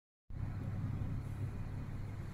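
Steady low rumble of background noise, beginning abruptly just after a moment of silence at the very start.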